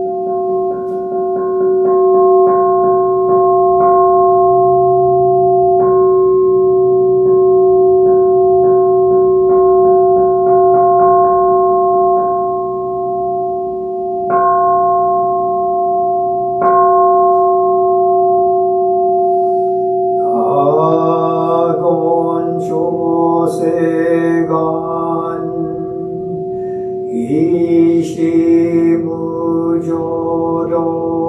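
A large bowl-shaped temple bell rings with a steady, sustained hum of a few pitches, with faint light ticks over it. About twenty seconds in, a man's voice begins Buddhist chanting over the still-ringing bell.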